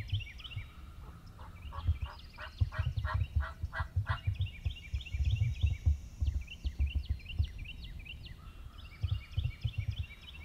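A wild turkey yelping: a run of about eight evenly spaced yelps, roughly four a second, about two seconds in. Songbirds sing repeated high chirping phrases throughout, and wind rumbles on the microphone.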